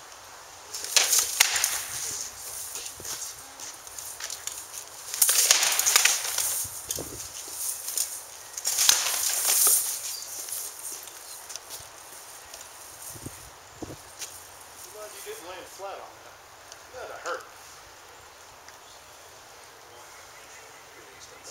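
Armoured combat sparring: three flurries of sword blows striking shields and armour, with armour rattling, about a second in, around five to seven seconds and near ten seconds, then scattered lighter knocks and footwork.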